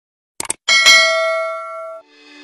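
Subscribe-button animation sound effect: a quick double mouse click, then a bright notification-bell ding that rings on and is cut off suddenly near the end.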